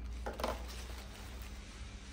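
Plastic packaging rustling as an item is pulled out of a clear bag: one short rustle about half a second in, then faint handling.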